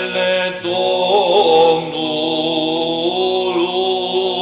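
Romanian Orthodox church chant in the seventh tone (glas 7). A melismatic, ornamented vocal line moves above a steady held low drone note.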